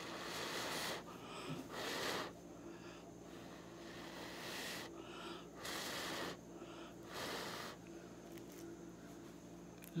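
A person blowing short puffs of breath through pursed lips onto wet acrylic paint to spread it across a canvas, about five puffs, each about half a second long.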